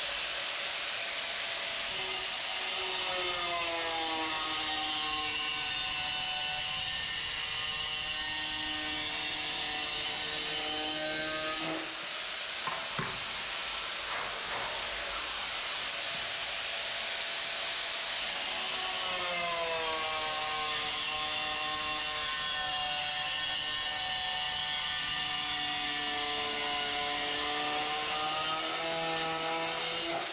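Handheld angle grinder cutting the edge of a ceramic floor tile: a steady grinding hiss over the motor's whine, which slides down in pitch as the blade is pressed into the tile. The cut runs in two long passes, with a brief easing of the load about twelve seconds in.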